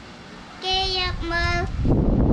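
A girl reading a Khmer text aloud in a chanting, sing-song voice: two long, drawn-out syllables. Under them a low rumbling noise builds and becomes loud near the end.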